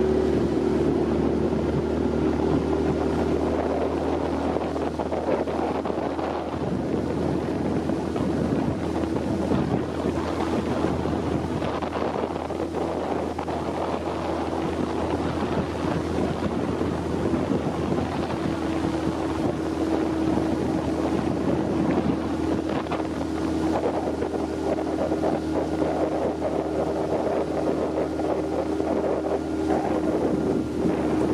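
A small boat's motor running steadily while underway, its note holding even, with water rushing past the hull and wind on the microphone.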